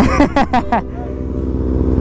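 Kawasaki ZX-6R inline-four motorcycle engine idling steadily. A short burst of voice and laughter comes in the first second.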